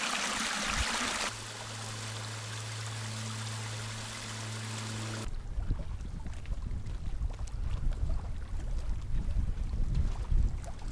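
Water of a small moorland burn rushing and trickling over rocks at the top of a waterfall, with a low steady hum underneath for a few seconds. About five seconds in it gives way abruptly to a low, gusty wind rumble on the microphone.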